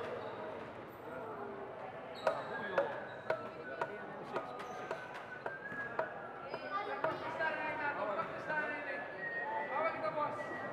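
A basketball bounced on a hard indoor court floor, about two bounces a second for around four seconds, as a player dribbles at the free-throw line before shooting. Voices of people in the gym carry on underneath.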